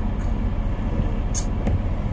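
Semi-truck diesel engine running at low speed, a steady low rumble heard from inside the cab, with a brief high hiss about two-thirds of the way in.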